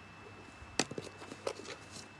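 Satin fabric being handled and unfolded: a few sharp rustles and snaps of the cloth, the loudest a little under a second in, then a small cluster around a second and a half in, over a faint steady hum.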